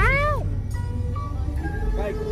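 A short high vocal call that rises and falls in pitch over about half a second, over the steady low rumble of a van on the road and background music with held notes.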